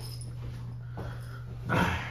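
A steady low hum, with a faint click about a second in. Near the end comes a short, loud burst of a man's voice, likely the start of a laugh.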